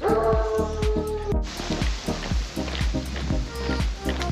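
Background music with a steady beat and bass; a held note with overtones sounds through the first second and a half.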